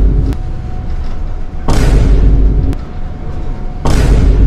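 Loud, distorted vomiting sound effect repeated in bursts of about a second: one ends just after the start, a second comes a little under two seconds in, and a third near the end, each heavy in the bass.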